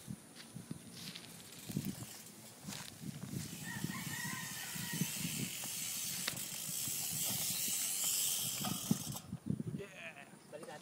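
A rooster crows once, about four seconds in, over a steady hiss that swells from about three seconds in and stops suddenly near the end, with scattered low knocks and rustles as the BMX bike is dragged through tall grass.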